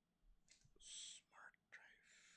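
Near silence with a man's faint whispered muttering, a few short breathy syllables under his breath.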